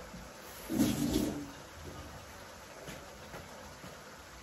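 Steady low hiss of a tomato-and-pepper sauce simmering in a wok over a high gas flame, with a brief voice sound about a second in.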